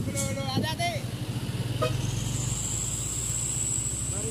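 A vehicle engine running steadily, with a person's voice calling out briefly in the first second and a faint steady high whine joining about halfway through.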